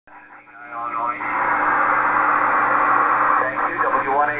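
Voice and static from a shortwave amateur radio transceiver tuned to the 20-metre phone band, heard through its narrow, thin-sounding receiver passband. A voice comes through briefly near the start, then a couple of seconds of band-noise hiss, then voices return near the end, over a steady low hum.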